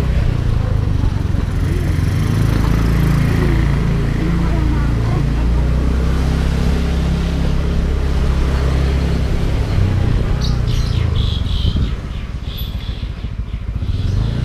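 Small motorcycle engine running at low speed, heard from the rider's seat as a steady low rumble, dropping slightly in loudness about twelve seconds in.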